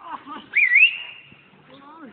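A single whistle, about a second long: it swoops up, dips, then rises to a high note that it holds briefly before fading.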